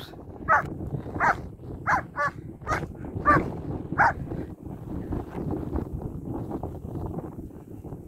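A dog barking in rough play with another dog: about seven short barks in quick succession, which stop about halfway through.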